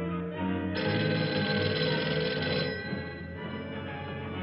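A telephone bell rings once for about two seconds, starting just under a second in and stopping abruptly, over background film music.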